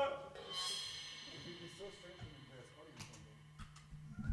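Quiet pause on a band stage: a high ringing tone sets in about half a second in and fades away over a couple of seconds, over a steady low hum from the amplifiers, with a few small clicks near the end.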